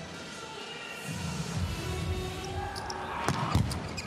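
Arena crowd noise with music playing over the hall's sound system, and a couple of sharp ball smacks about three and a half seconds in, a volleyball being hit or bounced.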